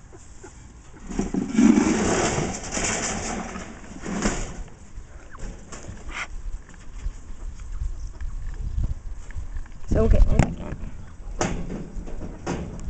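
Close rustling and handling noise with scattered clicks, loudest between about one and four seconds in, and a short voice-like sound about ten seconds in.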